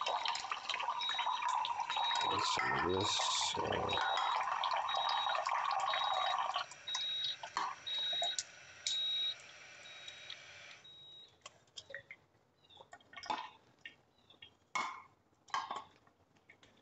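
Water running from an Enagic SD501 ionizer's outlet hose into a glass as it makes slightly acidic beauty water, with the unit beeping about twice a second, the usual Enagic warning that the water coming out is acidic, not for drinking. The flow eases a little past the halfway point and the flow and beeping stop together about two-thirds of the way through, followed by a few light knocks of glassware.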